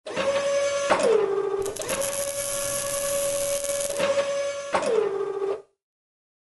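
Robotic-arm servo motor sound effect: a steady whirring motor whine that twice drops in pitch as it winds down, about a second in and again near five seconds, with clicks at the start and stop of each movement. It stops about half a second before the end.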